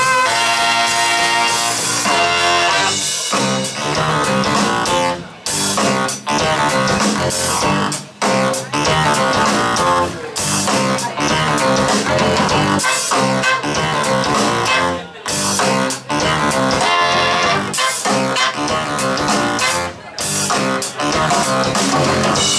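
Live band playing an up-tempo number, electric guitar to the fore over drums, bass and keyboard, with horns. The whole band stops short and comes back in several times, in brief breaks.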